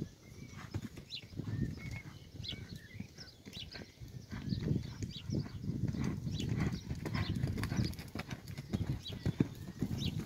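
Hoofbeats of a pony cantering on a sand arena, a run of dull, uneven thuds.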